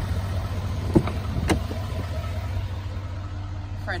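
Steady low hum of a pickup truck idling, with two short clicks of the door handle and latch as the front door is opened, about a second in and again half a second later.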